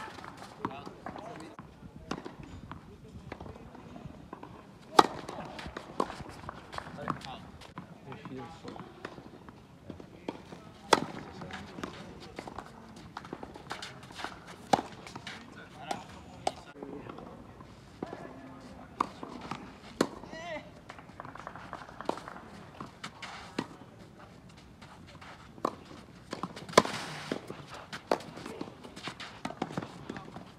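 Tennis ball struck by racquets in a rally: a sharp pop every one to three seconds, the loudest about five and eleven seconds in, with voices in the background.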